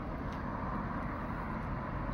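Steady outdoor street noise with a low traffic rumble, picked up by a smartphone's microphone while filming a night walk along a road.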